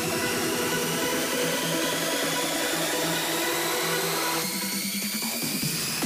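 Hard house build-up: a rising noise sweep over a pulsing electronic beat. The bass and kick fall away about four and a half seconds in, then crash back in at the very end as the drop lands.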